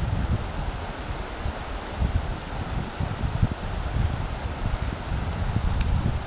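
Steady rush of a shallow creek running over stones, with wind buffeting the microphone in uneven low gusts.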